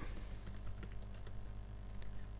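Computer keyboard typing: faint, quick, irregular keystrokes over a low steady hum.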